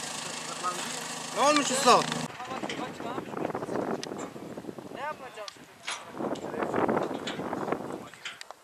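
Farm tractor engine running at idle, a steady low drone with men's voices over it. About two seconds in it stops abruptly at a cut, leaving open-air background with scattered voices.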